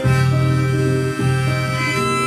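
Harmonica played in a neck rack over acoustic guitar during an instrumental break: long held notes, with a change of notes about a second in.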